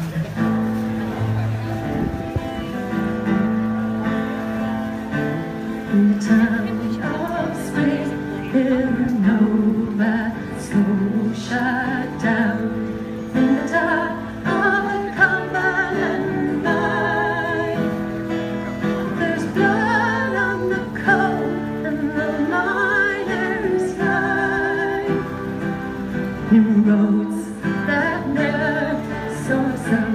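Live band playing the opening of a slow ballad: strummed acoustic guitar, bass and drums, with a wavering melody line above.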